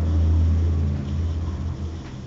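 A loud low rumble that weakens after about a second and dies away near the end.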